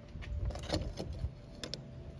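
Small metallic clicks and taps from a corroded ring and the coiled wire sizer inside it being handled by hand over a metal tin, a few light clicks spread through the two seconds, over a low background rumble.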